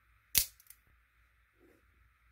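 A single sharp snap, like a cap gun, about a third of a second in, followed by a couple of faint small clicks. It fits the spring-driven blade of a Microtech Ultratech out-the-front automatic knife snapping back into its handle.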